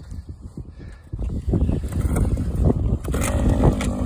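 Small gasoline engine of a power ice auger, pull-started: it catches about a second in and keeps running with a rapid low sputter.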